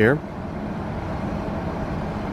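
Steady outdoor background noise with a low, even hum, like distant traffic or a machine running, with no distinct events.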